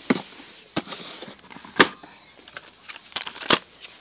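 Boxed and carded craft supplies being handled and shifted about: light rustling of cardboard and plastic packaging with several sharp clicks and knocks, the loudest a little under two seconds in.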